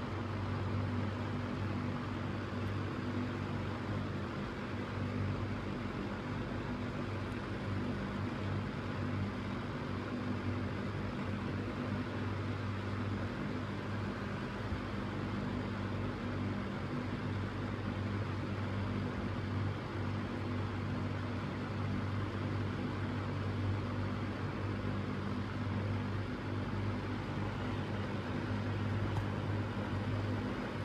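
Lasko Weather-Shield box fan with its grills off, its PSC motor running on low speed. A steady low motor hum sits under an even rush of air from the spinning blade.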